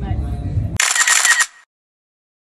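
Background voices and music cut off by a quick burst of camera shutter clicks lasting under a second, then dead silence.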